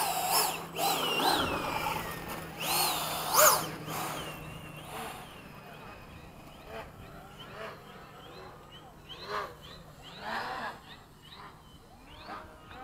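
Electric ducted fan of an 80mm RC jet whining, its pitch sweeping up and down several times with short throttle runs. About halfway through the sound drops away to a faint background with scattered distant sounds.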